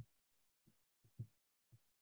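Near silence: room tone, with a few faint short taps.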